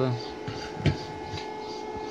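A steady electrical hum with a single sharp knock a little under a second in.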